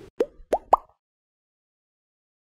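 Three quick cartoon 'bloop' pop sound effects in the first second, each a short upward sweep in pitch, each higher than the one before.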